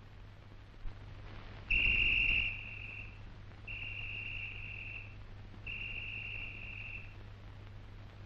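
Three blasts on a whistle, each just over a second long and about two seconds apart, all at the same high pitch, the first the loudest. A low steady hum runs under them.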